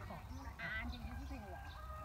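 Indistinct, distant voices of people talking over a steady low rumble, with a brief high-pitched call about half a second in.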